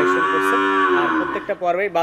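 A calf mooing: one long, loud call lasting about a second and a half that sags in pitch as it ends.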